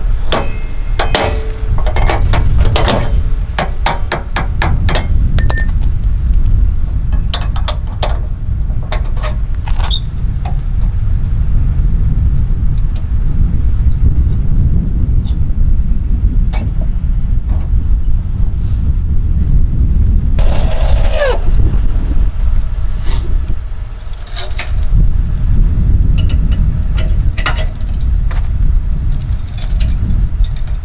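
Metal clinks and clanks of trailer hitch hardware (safety chain and hitch bar) being handled, thickest in the first ten seconds and again near the end, over a loud low rumble. A brief falling squeal about twenty seconds in.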